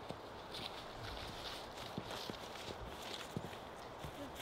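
Quiet footsteps of several people walking on a dry forest trail, crunching leaf litter at about two steps a second, with a few sharp clicks.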